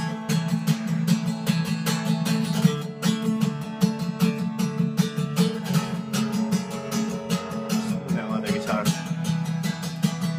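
Acoustic guitar strummed in a steady, busy rhythm: an instrumental passage with no singing.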